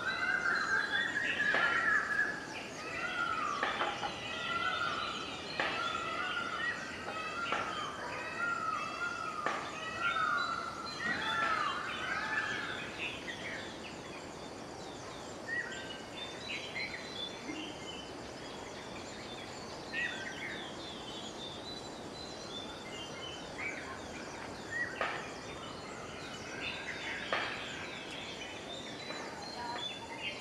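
Birds calling: a run of short, repeated whistled notes through the first half, then scattered chirps that pick up again near the end.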